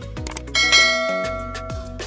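Notification-bell chime sound effect of a subscribe-button animation: a bright ding about half a second in that rings out and fades over about a second and a half, over background music with a steady beat.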